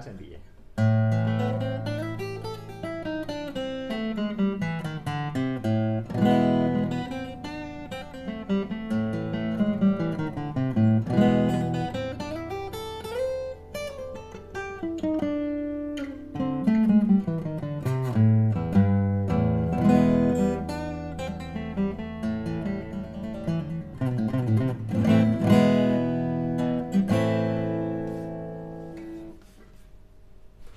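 Cetta LV33SCE steel-string acoustic guitar played unamplified for about half a minute, fingerpicked melody and chords over low bass notes that ring on, fading out near the end.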